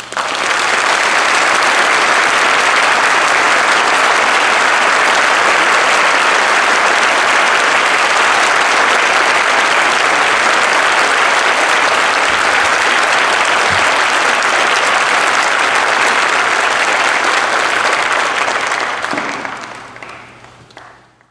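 Audience applauding: a loud, dense wash of clapping that breaks out suddenly and dies away near the end.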